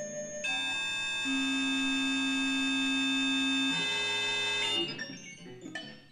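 Circuit-bent electronic instruments played live through amplifiers: a loud, held electronic chord of many steady tones begins about half a second in and shifts a little after three and a half seconds. It cuts off near five seconds and gives way to quieter, sparse short blips.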